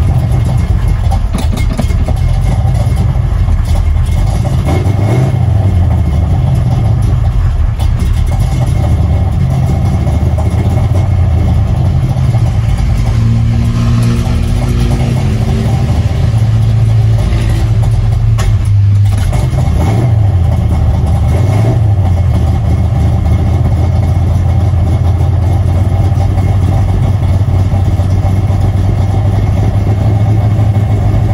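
Chevy 389 cubic-inch small-block stroker V8 running steadily at a raised idle just after a cold start, with no choke and a big cam. It fires and keeps running now that the Davis Unified Ignition distributor's internal ground fault is fixed.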